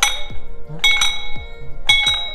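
Brass temple bell rung by hand three times, about a second apart, each strike ringing on in clear high tones, over background music with a beat.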